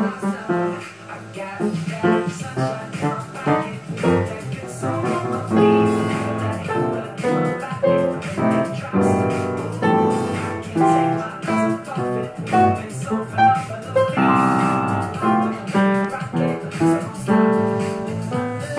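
An upright piano played along with a recorded pop song with guitar coming from a TV, the piano notes mixed into the track's groove.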